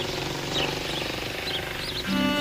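A motorcycle engine running as it passes close by, over a low steady street hum, with a few short high bird chirps.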